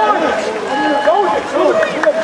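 Several people shouting and calling out at once, their voices overlapping so that no words come through.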